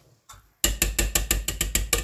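Wire potato masher clicking rapidly against a stainless steel pot, about nine sharp metallic clicks a second, starting about half a second in.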